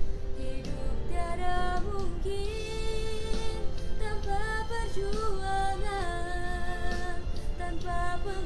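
A girl singing solo over an instrumental accompaniment, holding long notes with small glides between them; her voice comes in about a second in.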